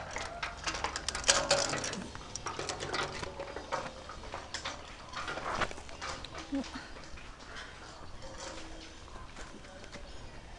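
A wheelbarrow load of soil and stones is tipped onto a pile: a dense clatter and rustle of falling earth and rock, loudest in the first two seconds, then thinning to lighter scattered crackles.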